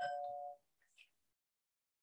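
A short chime: a single ding of two close, ringing tones that fades out within about half a second, followed by a faint click about a second in.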